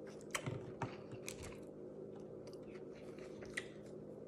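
A person chewing a mouthful of flatbread sandwich with the mouth closed: faint, soft clicks and crunches, most of them in the first second and a half, over a faint steady hum.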